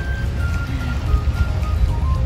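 Background music: a soft melody of short held notes over a steady low rumble.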